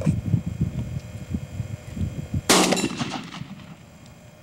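A single shotgun shot fired at a dove about two and a half seconds in, sudden and loud with a short ringing tail. Before it there is a low rumbling noise.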